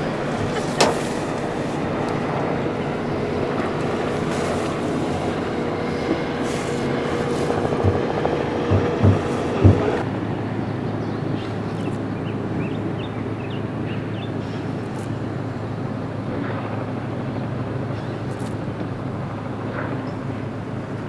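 Boat's outboard motor running steadily, its note dropping lower about halfway through. A few short knocks come just before the change.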